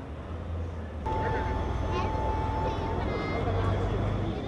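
Outdoor street ambience: a steady low rumble with faint background voices, and a thin steady tone lasting about two seconds from about a second in.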